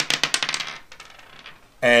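A six-sided die thrown onto a wooden tabletop, clattering and bouncing in a quick run of clicks that thin out and stop within about a second.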